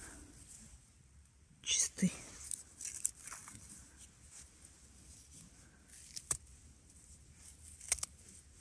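Small knife cutting through the stems of saffron milk cap mushrooms in dry pine needle litter: soft scraping and rustling, with two sharp snaps in the last two seconds. A brief breathy vocal sound about two seconds in.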